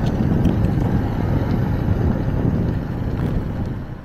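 Steady wind rush on a helmet microphone, mixed with the road noise of a Kingsong S22 electric unicycle's street tyre rolling on asphalt at riding speed. It eases a little near the end.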